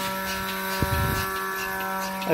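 Mini milking machine's electric vacuum pump running with a steady hum while its teat cups milk the cow. One short knock sounds a little under a second in.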